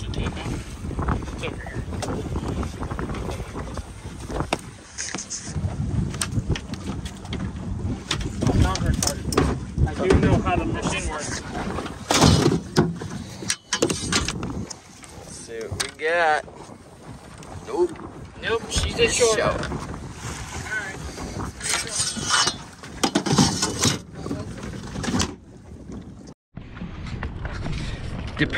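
Wind buffeting the microphone on an open boat, with a few indistinct voices and knocks.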